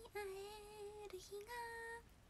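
A young woman singing a short phrase of long held notes, dipping lower and then rising back up to a higher note near the end.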